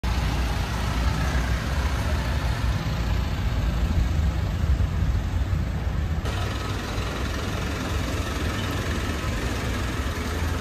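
Mitsubishi Strada pickup's diesel engine running at low speed, a steady low rumble. The upper part of the sound changes about six seconds in.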